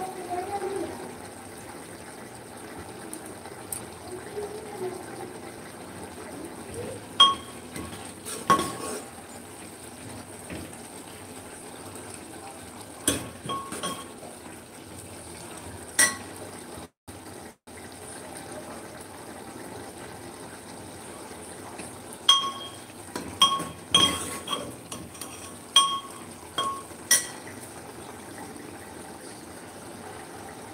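A steel spoon striking a metal cooking pot as food is stirred: sharp ringing clinks every few seconds, then a quick run of them about three-quarters of the way through.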